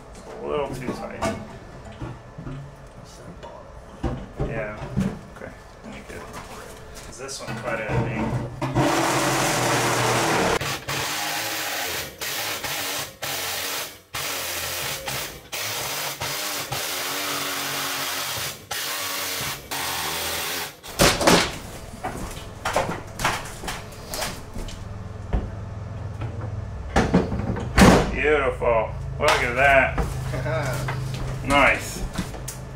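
Handheld power tool working the edge of a hole in an aluminium floor, running in one stretch of about twelve seconds with a few brief stops. Around it come knocks and muffled voices.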